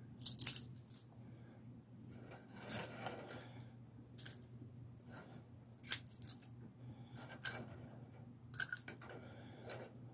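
Very crispy dehydrated hot peppers crackling and rustling as they are dropped and pressed by hand into the cup of a blade coffee grinder: scattered sharp crackles and clicks, the loudest about six seconds in. A low steady hum runs underneath.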